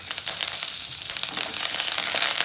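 Hot oil in a nonstick kadhai sizzling as freshly added curry leaves and green chillies fry with mustard seeds, dals and cashews for a tempering (tadka). It is a steady sizzle dotted with many sharp crackles.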